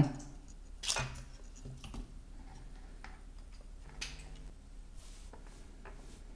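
Faint handling clicks as a USB-C power cable is plugged into a small handheld oscilloscope on a workbench, with a sharper click about a second in and another near four seconds.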